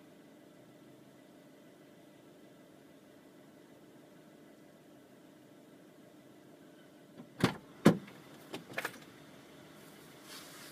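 A faint steady hum in a vehicle cab, then about seven and a half seconds in a quick run of four or five sharp knocks and clicks, the first two the loudest.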